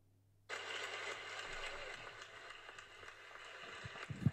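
Audience applause that breaks out about half a second in and slowly dies down.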